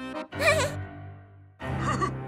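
A high voice makes a short, wavering, bleat-like wordless sound about half a second in, over background music. A low held tone starts shortly before the end.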